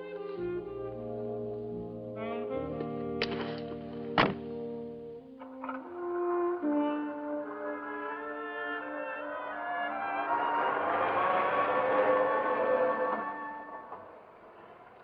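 Film score music with held chords. There are two sharp knocks about three and four seconds in. The music then swells into a loud, dense passage and falls away just before the end.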